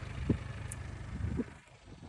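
Mitsubishi Pajero's 2.5-litre four-cylinder diesel engine idling with a steady, even low pulse. It cuts off abruptly about one and a half seconds in.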